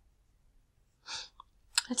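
Near silence for about a second, then a person's single short breath, and speech begins near the end.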